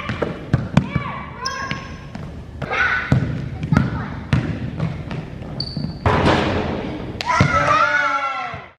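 A basketball bouncing and thudding on a hardwood gym floor, with brief high sneaker squeaks and children shouting during play.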